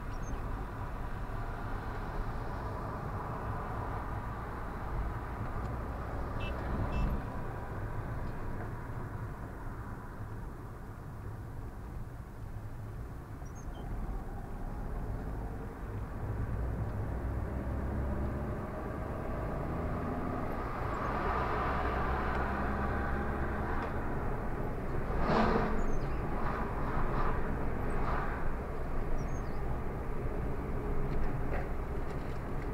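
Steady engine and road noise of a car being driven through town, heard from inside the cabin. It grows louder from about two-thirds of the way in, with a few sharp knocks near the end.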